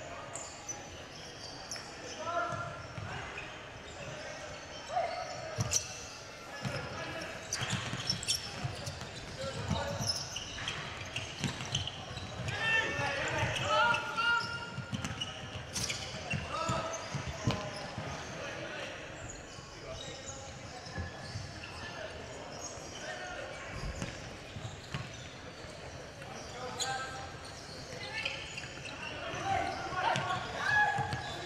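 Futsal players calling out to each other in a large, echoing indoor hall, with a futsal ball being kicked and bouncing on the wooden court. Several sharp ball strikes stand out through the stretch.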